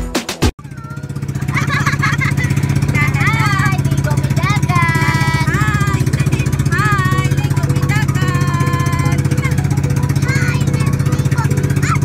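Music cuts off about half a second in and the engine of an outrigger bangka boat takes over, running steadily at cruising speed, with excited high voices calling out over it.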